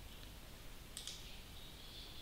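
Faint computer mouse clicks: a light click just after the start, then a sharper double click about a second in, over a faint steady hiss.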